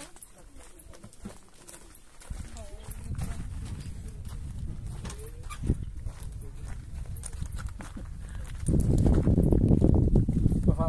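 Footsteps crunching on a gravel and stone path, with wind rumbling on the microphone from about two seconds in, growing much louder near the end.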